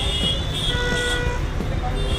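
Nokia 105 feature phone playing its startup tone as it boots: a steady high beep, joined near the middle by a shorter, lower tone lasting under a second, over a steady low background rumble.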